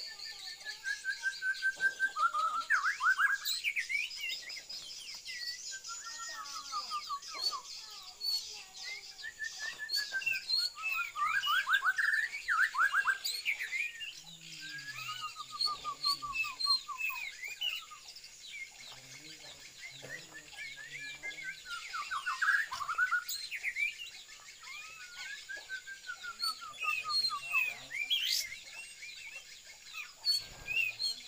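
Caged songbirds singing: rapid chirps and trills that sweep down in pitch. They come in loud bursts of a few seconds with short quieter gaps.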